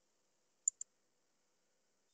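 Two quick clicks about a tenth of a second apart, the first louder: a computer mouse double-click.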